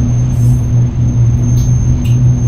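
Low, sustained bass drone from the song's instrumental, briefly dipping a few times, with a thin steady high tone above it.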